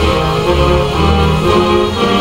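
A national anthem played as recorded instrumental music over loudspeakers, with held chords and a moving melody.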